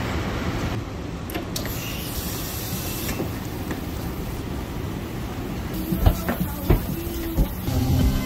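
Steady low rumble of a passenger train standing at an underground platform. A few short knocks come near the end.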